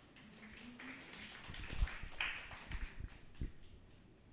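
Faint, light applause from the congregation, with a few low thumps.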